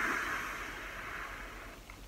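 A long draw on a drip box vape with a fresh dual-coil build: a steady, airy hiss of air pulled through the atomizer that fades away over about a second and a half.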